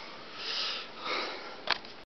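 A person sniffing twice, two short hissy breaths through the nose, followed by a single sharp click near the end.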